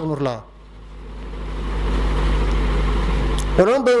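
A man's chanting voice ends a phrase, and a steady low rumble with a faint hiss fills the pause, growing louder over about three seconds. The chanting starts again near the end.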